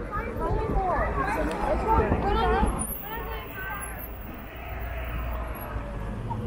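Chatter of several people talking nearby, voices overlapping and loudest in the first half, over a steady low rumble.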